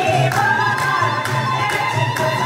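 Women's chorus singing a traditional Kabyle urar song together in long held lines, the melody rising slightly just after the start, over a steady beat of bendir frame drums.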